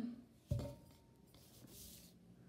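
A drinking glass is set down on a table with a sudden, solid thud about half a second in. A brief low falling hum comes just before it, and a faint rubbing hiss follows near the end.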